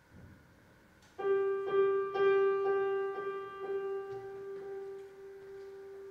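Grand piano playing one note struck over and over, about twice a second, starting about a second in, then held and left to ring.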